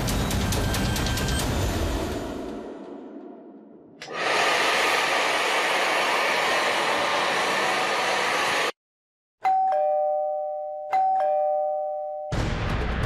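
A hair dryer runs with a steady rush and is switched off suddenly. After a moment a two-tone ding-dong doorbell rings twice, about a second and a half apart.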